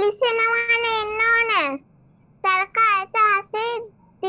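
A child singing: one long held note, then after a short pause several short sung syllables on a high, fairly steady pitch.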